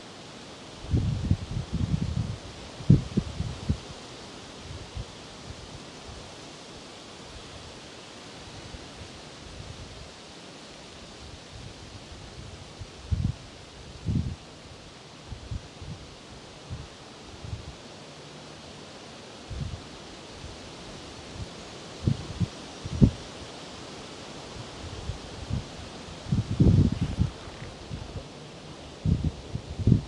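Quiet outdoor ambience: a steady faint hiss with scattered short, low rustles and soft thumps, a cluster in the first few seconds, a couple in the middle and more near the end.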